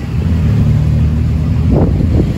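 Tuk-tuk engine running loud and low under throttle, with a steady low drone that swells at the start and holds, heard from the open passenger cab.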